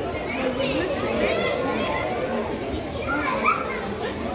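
Overlapping chatter of several people, children's voices among them, with no single clear speaker.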